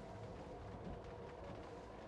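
Faint, steady ambience inside the cabin of a stationary Citroen Ami in the rain: light rain on the roof and windscreen with a low steady hum.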